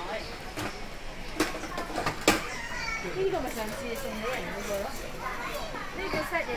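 Background chatter of shoppers with children's voices, no one speaking close to the microphone. Two sharp knocks cut through about a second and a half and two seconds in, the second the louder.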